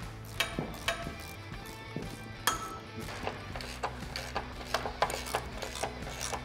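Scattered short metallic clicks of a 13 mm wrench working the M8 mounting-foot bolts of an aluminium roof rack, over background music.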